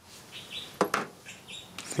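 Two sharp clicks of small motor parts being handled, about a second in, with a few faint high chirps around them.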